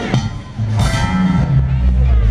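Live band playing, with a strong electric bass line under electric guitar.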